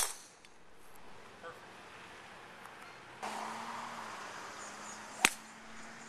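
Two golf drives: a driver's clubhead strikes a teed golf ball with a sharp crack, once right at the start and again about five seconds later.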